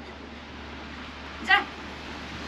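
A single short, high-pitched cat meow about one and a half seconds in, over a faint steady outdoor hiss.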